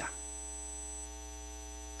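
Steady electrical mains hum with a buzzy edge: a low hum under a stack of even, unchanging tones, holding one level throughout.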